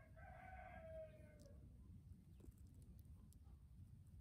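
A rooster crowing once, faint, for about a second and a half, its pitch dropping at the end.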